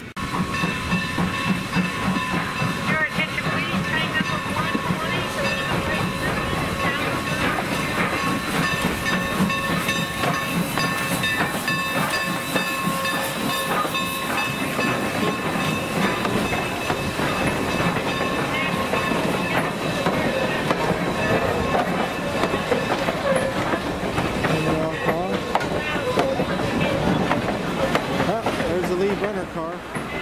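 Norfolk and Western steam locomotive and its passenger coaches rolling slowly past close by, a steady mass of engine and wheel noise. For roughly the first half a steady high ringing tone sits over it, then fades as the coaches go by.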